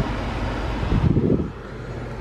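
Steady air rush from the 2008 Buick Lucerne's climate-control blower in the cabin, over the hum of the idling engine. There is a brief rumble about a second in, and the level drops about a second and a half in.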